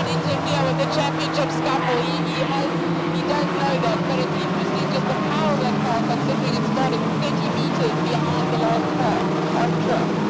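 A pack of Volkswagen Polo race cars running together at racing speed. Their engines make a steady, blended note, and voices talk over it.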